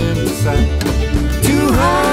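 Folk-country band music in an instrumental break: acoustic guitar and upright bass over a steady beat, with a melody note that bends down and back up near the end.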